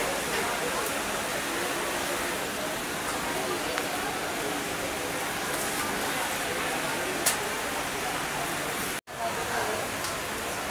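Indistinct background chatter of people over a steady hiss of crowd ambience. There is a sharp click about seven seconds in, and the sound drops out for a moment near the end.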